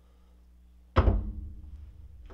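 Two 3/8-inch drive flex-head ratchets with sockets fitted are set down on a wooden tabletop. It gives one sharp thunk about a second in, with a low rumble fading after it.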